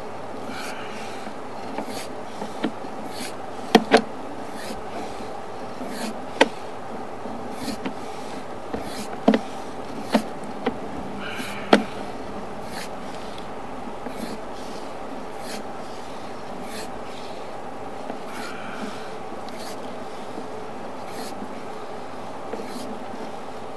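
Sewer-inspection camera and push cable being fed down a clay main sewer line: a steady hum with light ticks about every half second and a handful of sharper knocks in the first half.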